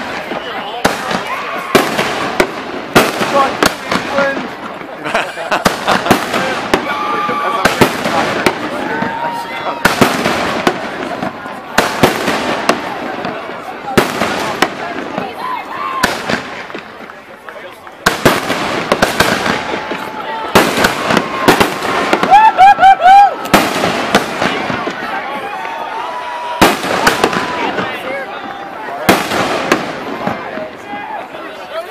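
Aerial fireworks bursting overhead: many sharp bangs in quick, irregular succession, with a brief lull a little past halfway.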